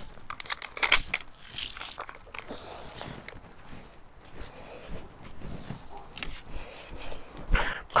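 Footsteps crunching on dry garden ground, with scattered clicks and knocks of handling; the loudest knock comes near the end.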